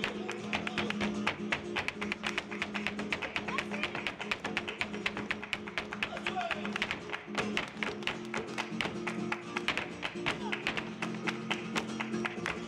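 Live flamenco: a Spanish guitar playing under a fast, dense rhythm of sharp handclaps (palmas) and the dancer's heels striking the wooden stage in zapateado footwork.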